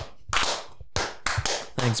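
A few people clapping their hands in a short round of welcoming applause, uneven claps that die away near the end.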